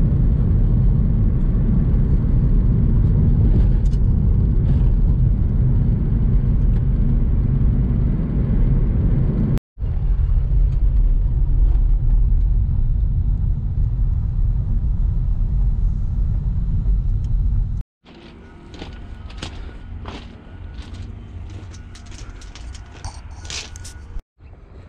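Road and engine rumble inside a moving car's cabin: a loud, steady low drone. After a cut about 18 seconds in it gives way to quieter crunching footsteps on gravel.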